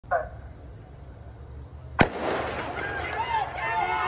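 The starter's gun fires once, sharply, about two seconds in, sending off a women's 100 m sprint start. It is preceded by a brief call near the beginning, typical of the starter's "set" command. After the shot the stadium crowd rises into cheering with whoops.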